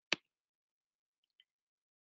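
A single short, sharp click just after the start, from a computer mouse or key advancing the presentation slide.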